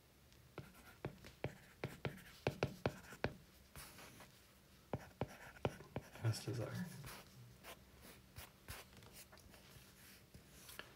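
Stylus tapping and clicking on a tablet's glass screen while handwriting, a quick run of sharp taps over the first few seconds and another cluster around five to six seconds in.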